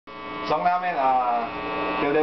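A man talking over a steady electrical hum and buzz, the kind that comes from the plugged-in electric guitar rig.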